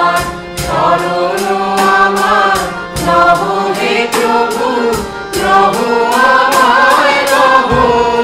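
A mixed choir of men's and women's voices singing a song together, accompanied by a harmonium's held notes, with a steady percussive beat running under the singing.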